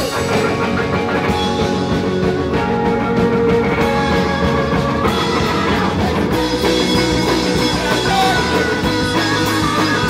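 Garage punk rock'n'roll band playing live: electric guitars and drum kit, loud and steady.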